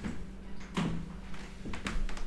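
A few faint knocks and thuds over a low, steady hum.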